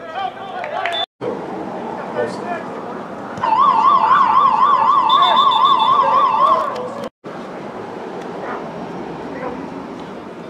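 A siren in a fast warble, about seven wobbles a second, sounds loudly for about three seconds starting about three and a half seconds in, over background voices. The sound cuts out briefly twice.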